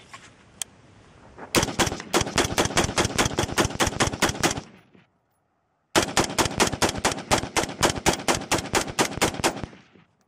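Daniel Defense AR-15 in 5.56 mm with a BattleComp muzzle brake, fired rapidly: two long strings of about six shots a second, each lasting three to four seconds, with a short break between them.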